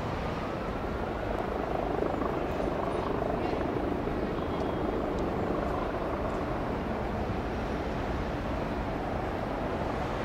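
Steady outdoor city rumble of distant engine noise, swelling from about two seconds in and easing off again after about six seconds.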